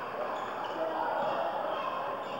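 Basketball game sound: steady chatter and calls from players and spectators, with a basketball being dribbled on the wooden court.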